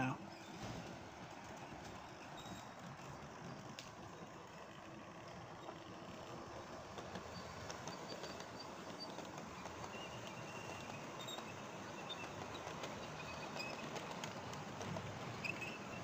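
Model trains running on the layout's track, a faint steady sound that grows slowly louder toward the end.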